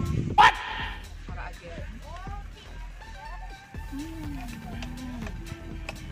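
A dog barks once, sharply, about half a second in, followed by quieter yipping calls over background music.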